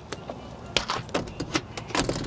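Used RV emergency window on a camper trailer wall being unlatched and pushed open: a quick series of sharp clicks and knocks from the latch and frame.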